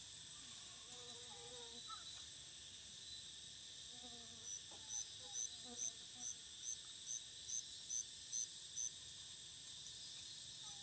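Steady high buzzing of an insect chorus in the forest, with a run of about a dozen short, evenly spaced high chirps, two or three a second, starting about four seconds in and lasting about four seconds.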